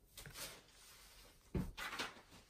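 A spatula spreading thick cake batter in a metal loaf pan: a soft scrape about half a second in, then two knocks against the pan, about 1.5 s in and just before the end.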